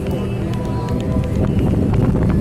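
Music playing under the chatter and shuffling of a milling crowd, with scattered short clicks.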